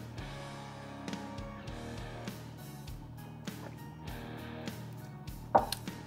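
Quiet background music with guitar and a soft, slow beat.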